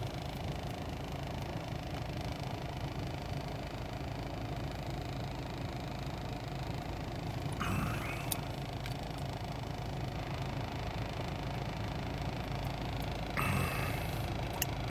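Steady low hum inside a car cabin while a man gulps chocolate milk from a bottle, with a short breathy gasp about eight seconds in and another near the end as he comes up for air.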